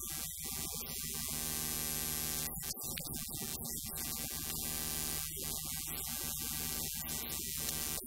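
Live worship music, with a man and a woman singing into microphones over a sustained low accompaniment. It is heard through a strong steady hiss with patchy dropouts.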